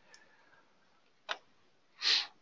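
Near silence broken by a single short computer-mouse click about a second and a quarter in, with a much fainter tick near the start.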